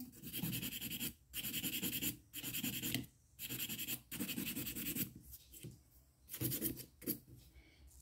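A 180-grit nail file rasping over a hardened acrylic nail in short strokes, about one a second, with brief pauses between them.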